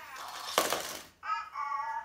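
A short noisy scraping rush, then a brief pitched electronic tone from a small toy robot.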